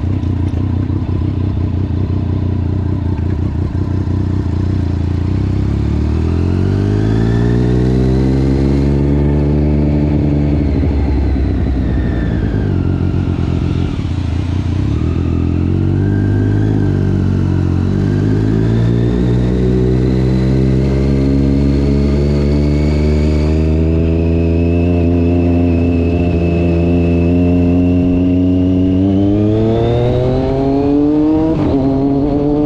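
Triumph sport motorcycle engine heard from the rider's seat under way: it pulls up through the revs, eases off and drops back around the middle, then accelerates again, its pitch climbing steeply near the end.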